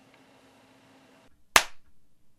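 A single sharp hand clap about one and a half seconds in, with a short ring after it. It is a sync clap, made in place of a clapperboard to line up the camera's audio with the booth microphone's recording.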